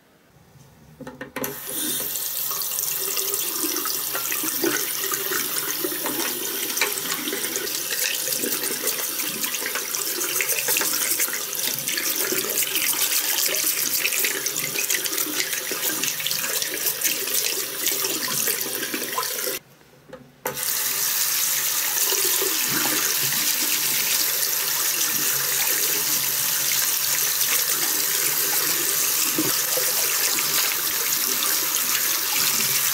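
Water running from a bathroom tap into a ceramic sink and splashing over a small die-cast car body being scrubbed with a toothbrush under the stream. It starts about a second in and runs steadily, with one brief break about two-thirds of the way through.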